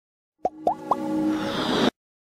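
Logo intro sound effect: three quick rising pops, each a little higher than the last, then a swelling sustained musical tone with a rising shimmer that cuts off suddenly near the end.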